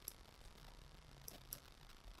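Near silence: faint room tone with a few faint computer mouse clicks, one at the start and two close together past the middle.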